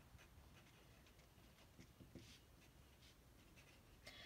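Faint scratching of a pen writing on paper, in near silence, with a slightly louder patch of strokes about two seconds in.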